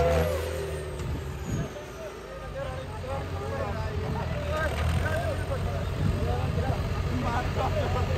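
Diesel tractor engine running hard under load, dragging a weighted disc harrow, then easing off at about a second and a half to a steadier, quieter run. Men's voices call out over the engine from about three seconds in.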